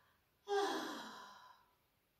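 A woman's long, satisfied sigh. It starts about half a second in and falls in pitch as it fades away.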